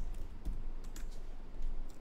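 Computer keyboard keys tapped a few times, typing a short word into a search field.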